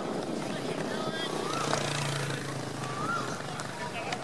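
Outdoor field hockey pitch ambience: short distant calls over a steady background, a single sharp hockey stick striking the ball partway through, and a low steady hum from about one and a half to three and a half seconds in.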